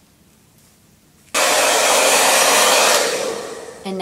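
Handheld hair dryer blowing, starting abruptly a little over a second in and running for about two seconds before dying away.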